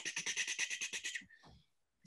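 A person making a rapid clicking mouth sound, about thirteen short clicks a second for just over a second, acting out frantic scribbling; it stops suddenly and is followed by silence.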